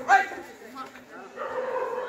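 Men shouting at a kabaddi match: a short, sharp shout just after the start, then a longer held call near the end.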